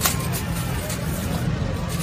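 Wind buffeting the microphone as a steady low rumble, with a brief rustle of the paper kite being handled right at the start.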